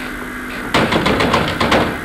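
Theatre audience clapping: a short, loud burst of applause that starts a little under a second in and stops just before the end.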